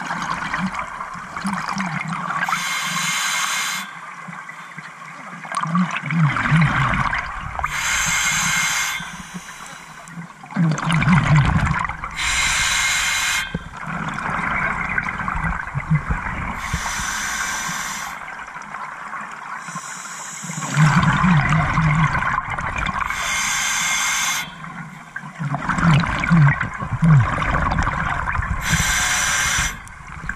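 Scuba diver's regulator breathing underwater: a short hiss on each inhale and a long gurgle of exhaled bubbles, in a steady cycle about every five seconds.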